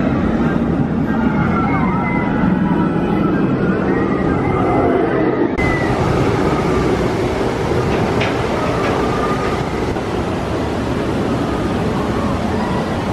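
Outdoor theme-park ambience: a steady low rumble under the murmur of distant crowd voices. About halfway through the background changes to a brighter, hissier noise, with one short click a couple of seconds later.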